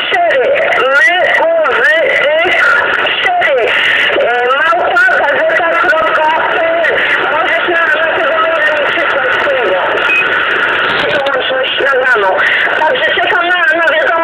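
Voice of a distant station received on a President Jackson CB radio, heard through the set's speaker: narrow, tinny, hard-to-follow speech over a constant hiss of static.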